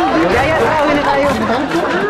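Several people talking and shouting over one another in a loud, excited chatter.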